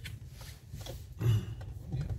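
Low steady rumble inside a car's cabin, with a few faint clicks and one short spoken 'yeah' about a second in.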